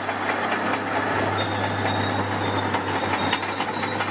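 Military bulldozer's engine running with clanking tracks: a steady low hum under a rattling mechanical clatter.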